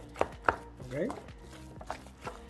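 A utensil stirring thick mashed sweet potato and cold butter in a glass mixing bowl, with several short sharp knocks as it strikes the bowl.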